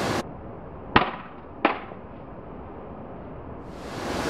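Two sharp knocks about two-thirds of a second apart, about a second in, over a muffled hush: a dropped Samsung Galaxy Note 3 striking the ground and bouncing.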